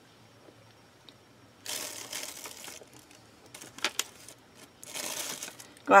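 Handling noise on a craft table: two stretches of rustling about a second long, the first about two seconds in and the second near the end, with a few light clicks between them.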